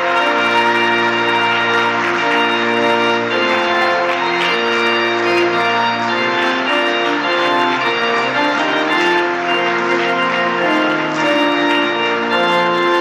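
Church organ playing a wedding recessional: loud, bright, sustained chords that change every second or so.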